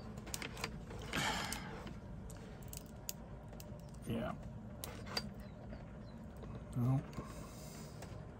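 Light clicks, taps and rattles of a plastic MC4 solar connector housing and small metal pin-removal tools being handled and twisted, with a short rustle about a second in. Two brief low voice sounds, like a hum or grunt, come about halfway and near the end.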